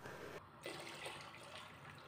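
Water poured from a metal tumbler into a pot of jaggery water, heard faintly as a low, even splash.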